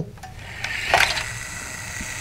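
A string pulled off the spindle of an upright cylinder on a cart: a rasping pull that peaks about a second in, then the cylinder spinning with a steady whir.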